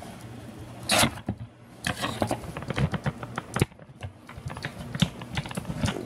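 Cardboard box being handled and turned: an irregular run of clicks, taps and scrapes, with louder scrapes about a second in and again just past the middle.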